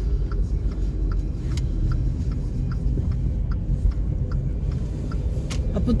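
Steady low rumble of a car heard from inside its cabin, the engine and road noise of the car she is sitting in, with faint light ticks above it.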